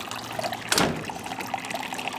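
A single click from the black plastic door latch of a Palram Mythos greenhouse being turned against its aluminium door frame, about three-quarters of a second in, over a steady background hiss.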